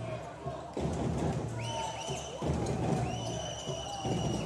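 Basketball game sounds on a hardwood court: sneakers squeaking several times in the second half, the longest squeak near the end, with knocks of the ball bouncing over the steady murmur of the arena crowd.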